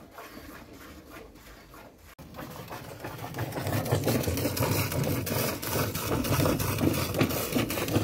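Hand-milking a cow: rapid, rhythmic jets of milk squirting into a metal pail already frothy with milk. The sound gets louder about two seconds in, with a low rumble underneath.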